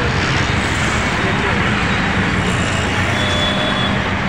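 Steady road traffic noise, a dense rumble of passing vehicles, with a short thin high tone near the end.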